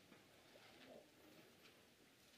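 Near silence: room tone, with a faint soft sound about a second in.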